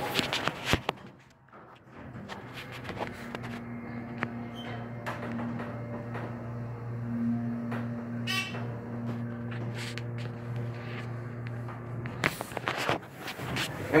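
Dover hydraulic elevator travelling: a steady low hum starts about two seconds in and stops about two seconds before the end, with a few clicks before and after it. A brief high chirp comes about eight seconds in.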